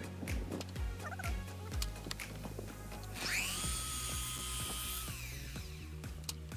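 Festool KS 120 EB sliding miter saw motor spinning up with a quickly rising whine about halfway through, running at a steady pitch for about two seconds, then winding down.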